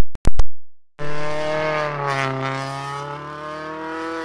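A few loud sharp cracks in the first half second. Then the engine of Thierry Neuville's Hyundai i20 N Rally1 car runs steadily and fades as the car pulls away, its pitch sagging slightly.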